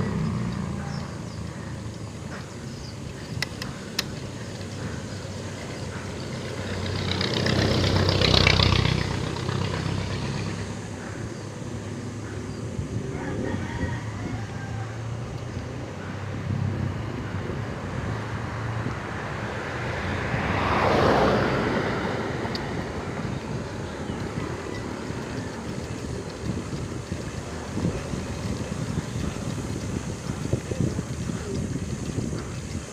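Steady wind and road noise from a moving bicycle, with two motor vehicles passing, each swelling and fading over a few seconds, about a quarter of the way in and again about two-thirds of the way in. A couple of sharp clicks come early on.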